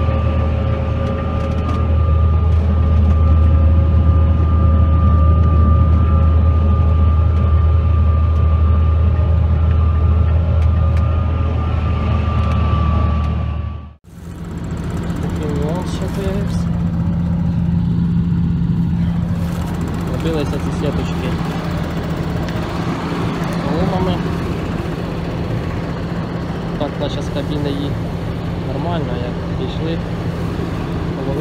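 Tractor engine droning steadily inside the cab, with a steady high whine over it. About halfway through the sound cuts off suddenly to a seed drill's cutting discs and packer roller working through straw stubble, a steady machine noise with a lower hum.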